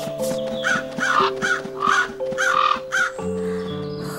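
Cartoon crows cawing in a quick string of short calls, which stop about three seconds in, over light background music with held notes.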